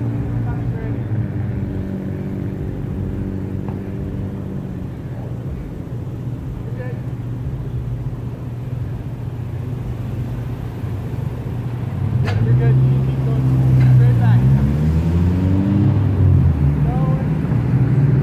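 Car engines idling with a steady low hum, which grows louder about two-thirds of the way through, under indistinct voices.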